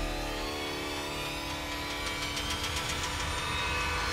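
Suspenseful background score: a low rumbling drone under held sustained tones, with a quick rattling flutter about two to three seconds in.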